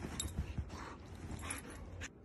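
A dog making several short sounds in quick succession.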